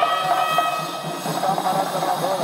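Double-reed pipe of the nadaswaram kind playing a wavering, gliding melody over a steady drum beat, the auspicious mangala vadyam music of a South Indian temple ritual.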